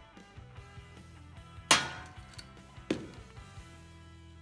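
Background music with two sharp knocks on the metal-topped counter, the first and loudest a little under two seconds in, the second about a second later, as things are set down while the roasting pan is being oiled.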